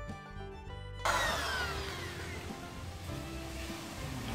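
Background music cuts off about a second in, replaced by a corded electric drill spinning down after being switched off, its whine falling in pitch and fading into low background noise.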